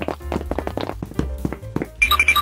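Background music with a steady bass, over rapid light tapping footstep sound effects, about six taps a second.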